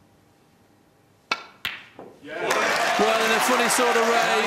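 Snooker cue striking the cue ball with a sharp click, then the cue ball clicking against the blue about a third of a second later and a softer knock as the blue drops into the pocket. Audience applause starts straight after and builds to loud.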